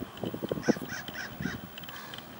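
A bird outdoors calling four times in quick succession, the calls short and about a quarter second apart, starting a little under a second in.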